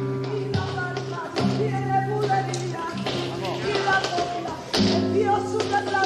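Flamenco song: a voice singing wavering lines over held chords, with sharp percussive taps throughout.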